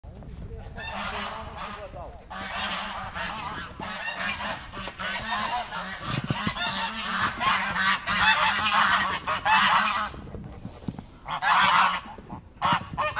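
A flock of domestic geese honking, many calls overlapping, with a brief lull about ten seconds in before the honking starts again.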